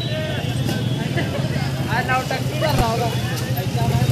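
Busy market-street ambience: scattered voices of passers-by over a steady hum of motorcycle engines and traffic.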